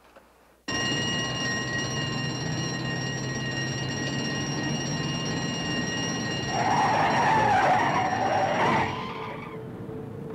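A lorry driving, its noise with a steady high whine cutting in suddenly about a second in. From about two-thirds of the way through, a louder wavering squeal like skidding tyres rises over it, then fades.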